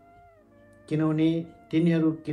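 A man's voice reading aloud in Nepali with drawn-out, sing-song syllables. It resumes about a second in after a short pause.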